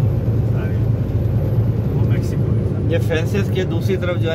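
Steady road and engine drone heard inside the cabin of a vehicle moving at highway speed. A voice talks over it in the last second.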